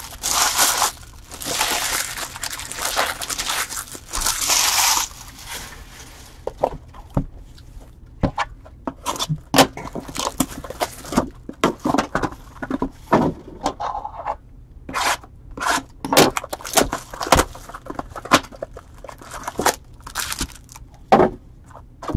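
Trading-card hobby box and foil packs being handled: about five seconds of crinkling, tearing wrapper noise at first, then scattered clicks, scrapes and short rustles of cardboard and packs.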